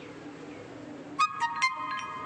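Phone message-notification chime: three quick bright notes a little over a second in, the last one ringing on briefly. A faint steady low hum runs underneath.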